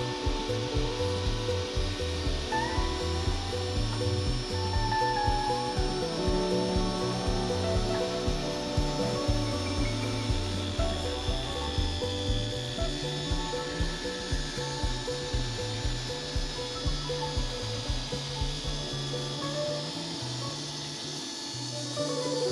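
Background music with a steady beat, over a jobsite table saw cutting a wooden board.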